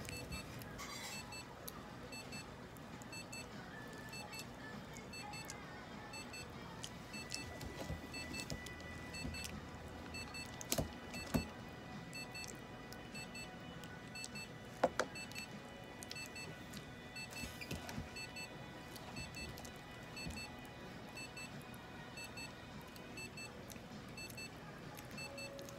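Faint electronic beeps, in pairs, repeating at a steady pace over low room noise, with a few sharp knocks around the middle.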